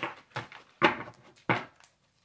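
A deck of tarot cards being shuffled by hand: four short slaps and rustles of the cards, roughly half a second apart.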